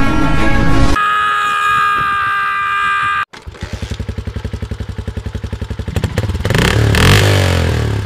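Background music plays and cuts off about three seconds in. A motorcycle engine then idles in even pulses, about eight a second, and revs up louder over the last second or two.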